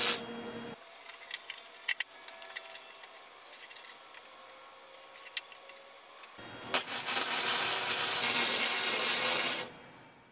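Flux-core wire-feed welder arc crackling on steel pipe, cutting off within the first second. A few seconds of light metal clinks from handling the pipe frame follow. A second steady weld crackle of about three seconds starts past the middle and stops just before the end.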